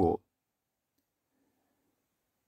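The last syllable of a narrating voice, cut off just after the start, then near silence.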